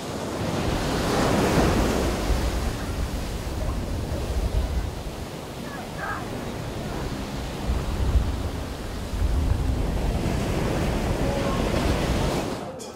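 Waves breaking and washing through the surf, with wind buffeting the microphone in a low, uneven rumble.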